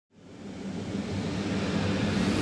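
A rushing, rumbling noise swell fading in from silence and slowly building: an intro sound effect.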